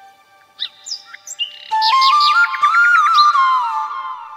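Bamboo flute over recorded birdsong. A few bird chirps come first. Then, about a second and a half in, the flute enters on a held note that steps up and slides back down, while a bird trills rapidly behind it.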